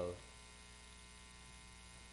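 Steady low electrical mains hum in a pause between spoken words; the tail of a drawn-out 'uh' fades out right at the start.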